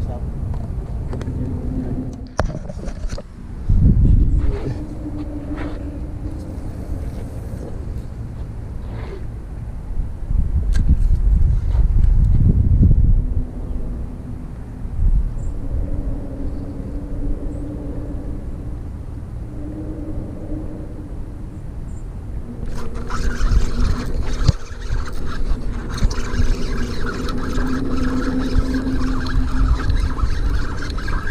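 Indistinct voices, with no clear words, over outdoor background noise. Low rumbling swells come and go twice in the first half.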